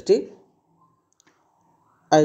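The end of a spoken phrase in the first half second, then a near-silent pause broken by two or three faint small clicks.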